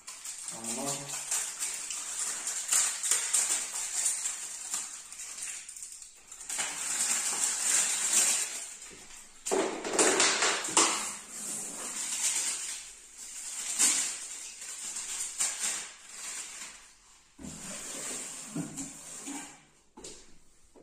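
Rustling and scraping of a plastic artificial Christmas tree's bristly branches against its cardboard box as the tree sections are handled, in uneven bursts.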